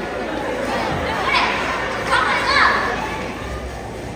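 Children's voices, with chatter and two louder, higher calls that rise and fall about one and a half and two and a half seconds in.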